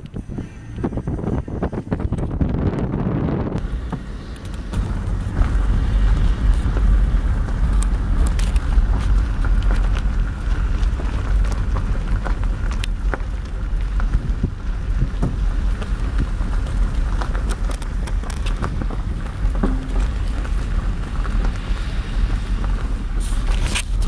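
Car driving, heard from inside the cabin: a steady low road rumble with wind noise, which grows louder about five seconds in.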